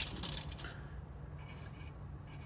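A metal tape measure is handled with a few short clicks and rattles, then a permanent marker writes on bare aluminium plate in short, faint scratching strokes. A low steady hum runs underneath.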